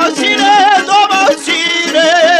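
Bosnian izvorna folk song: singing that holds notes with a wide vibrato over string accompaniment.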